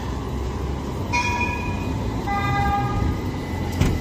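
A street tram passing close by, rolling with a steady low rumble. A held high tone sounds from about a second in, then gives way to a lower held tone that lasts until near the end.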